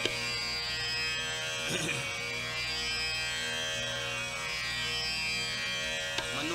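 Tanpura drone on its own: steady, buzzing sustained strings holding the tonic, with no singing or tabla over it.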